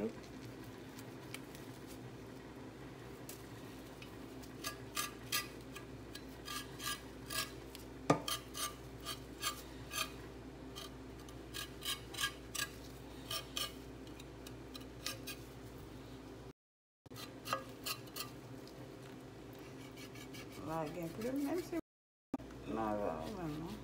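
Kitchen knife blade scraping goat skin to strip off the hair still left on it, a run of short, quick strokes in bursts, with one sharper knock about eight seconds in.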